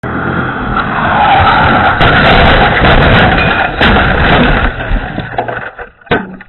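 Loud, continuous rushing noise with a few sharp bangs, fading out near the end: a blast and burning in the cargo area of an SUV that blows out its rear window and scatters charred debris, heard through a security camera's narrow microphone.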